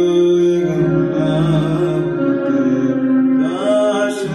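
A male voice singing a slow Hindi ballad melody with vibrato over sustained chords played on an electronic keyboard.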